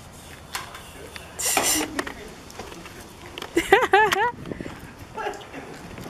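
Brief, unworded voice sounds from the people on the dock: a short breathy burst about one and a half seconds in, then a quick run of four or five rising-and-falling vocal notes about four seconds in.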